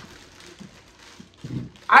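Faint rustling of a small plastic jewelry packet being handled in a quiet room; a woman starts speaking right at the end.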